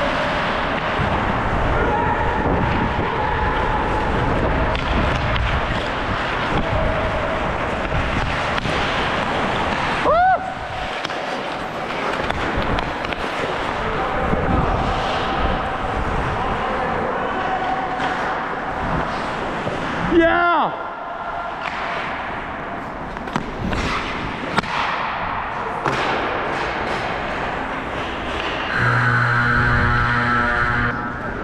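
Ice hockey play on an indoor rink: skates cutting the ice over steady rink noise, with a couple of sudden knocks. Near the end an arena horn sounds a long steady note, signalling the end of the game.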